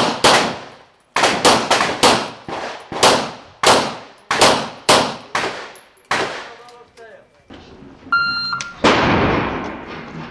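Semi-automatic pistol fired rapidly, many shots often in quick pairs, each with a ringing echo, stopping about six seconds in. A short electronic beep sounds about eight seconds in.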